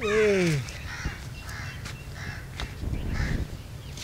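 A man's short exclamation falling in pitch at the start, then a series of short bird calls repeating in the background.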